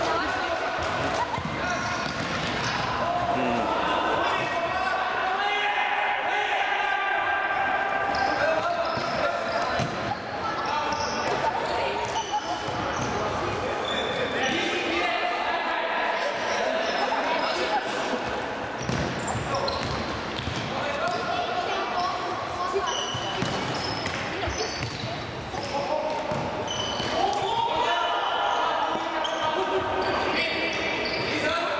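Players' shouts and calls echoing in a sports hall during a futsal match, mixed with the knocks of the ball being kicked and bouncing on the hard court.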